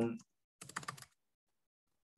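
Computer keyboard keys clicking in a quick run of several keystrokes about half a second in.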